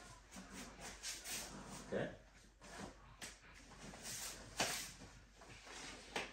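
Soft shuffling steps and clothing rustle as a person moves across padded training mats, with a single sharp knock about four and a half seconds in.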